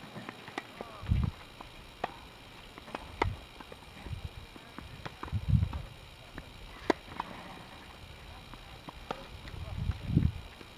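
Tennis balls being struck by rackets and bouncing on a hard court during a rally: a string of sharp pops about every one to two seconds, with several dull low thumps in between.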